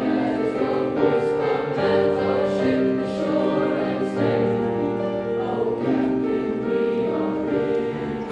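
Junior high boys' choir singing in harmony with held notes, accompanied by piano chords.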